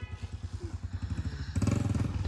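A small engine running with a steady, rapid pulse, growing louder about one and a half seconds in.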